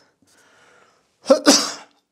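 A man sneezing once, about a second and a half in: a brief voiced intake and then a loud noisy burst that fades quickly.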